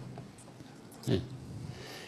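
A pause in a man's talk at a close microphone: faint room tone, broken about a second in by one short nasal breath, like a sniff.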